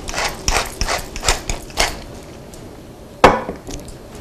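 Wooden pepper mill being twisted to grind black pepper: a run of quick ratcheting, crunching clicks over the first two seconds. A single sharp knock, the loudest sound, comes a little after three seconds in.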